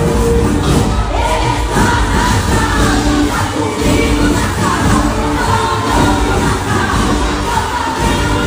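Loud church worship music with singing, and a crowd of voices singing and cheering along.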